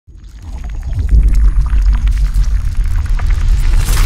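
Water-splash sound effect for a logo intro: a loud, deep rumble with scattered crackles and splashy hiss, swelling into a rushing whoosh near the end.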